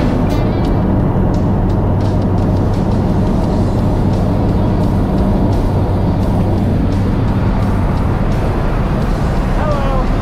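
Steady drone of a single-engine turboprop jump plane in climb, heard inside the cabin as engine hum mixed with rushing airflow.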